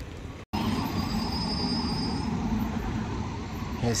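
Steady road-traffic rumble with a low engine hum, after a brief cut to silence about half a second in.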